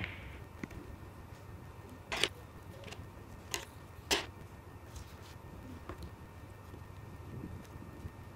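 Quiet paper-crafting handling sounds at a table: a glue stick and paper being handled, with a few sharp taps and clicks, the loudest about two and four seconds in, over a low steady hum.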